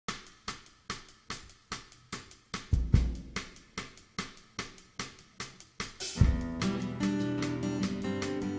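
A drum kit tapping out a steady beat of sharp ticks, about two and a half a second, with a low kick-drum thump about three seconds in. About six seconds in the full band comes in on a hit, with strummed acoustic guitar chords ringing over the drums.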